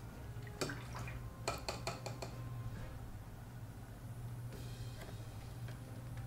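A paintbrush being rinsed in a water jar and tapped against the glass: one light clink, then about a second later a quick run of five taps, and a soft swish of water near the end, over a low steady hum.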